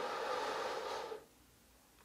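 A person sighing: one breathy exhale lasting just over a second, with no voice in it.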